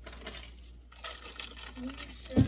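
A metal spoon stirring coffee in a ceramic cup: quick, light clinking in two short flurries, the second about a second in.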